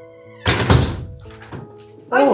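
A single heavy thump about half a second in, dying away quickly, over background music with sustained notes.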